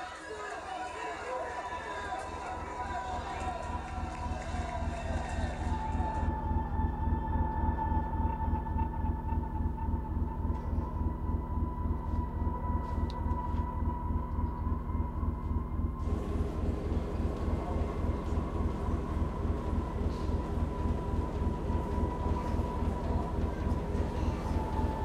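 Film score: a low pulse beating about three or four times a second under a sustained high tone, swelling over the first several seconds and then holding steady. A murmur of voices lies under it at the start.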